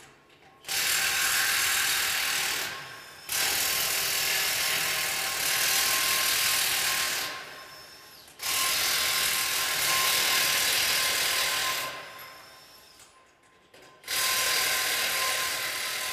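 Impact wrench hammering the wheel nuts off a tractor's rear wheel in four loud bursts of a few seconds each, with short pauses between them.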